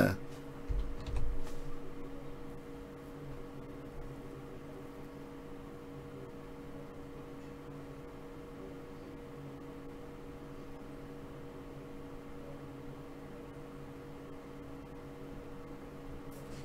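Low steady hum with faint room noise, with a couple of soft low bumps about a second in.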